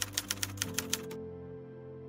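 A typewriter sound effect, a quick even run of key clicks about eight a second, stopping a little past halfway, over a held chord of background music.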